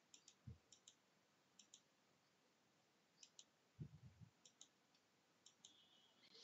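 Faint computer mouse button clicks as checkboxes are ticked one after another: six press-and-release pairs at irregular spacing. There is a soft low thump about half a second in and another around four seconds in.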